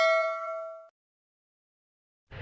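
A bell-like ding sound effect from a subscribe-button animation rings out with several clear tones and fades, then stops abruptly about a second in.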